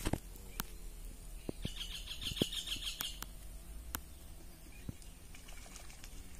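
A bird calling in a fast series of high repeated notes, starting about a second and a half in and lasting about a second and a half, with a few sharp clicks scattered through.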